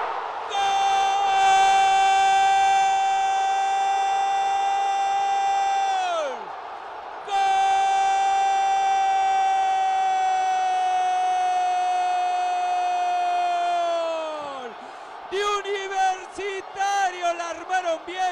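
A football commentator's long shouted goal cry, "¡Gooool!", held on one steady note for about six seconds and dropping in pitch as the breath runs out. After a short pause he holds a second long note for about seven seconds, which drops away the same way. Fast, excited commentary starts again near the end.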